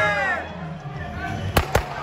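Two handheld confetti cannons firing, two sharp pops a fraction of a second apart near the end.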